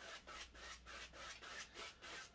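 A large two-inch bristle brush sweeps side to side over wet oil paint on canvas, blending the sky and working out fan-brush marks. It makes faint, rhythmic brushing swishes, about four strokes a second.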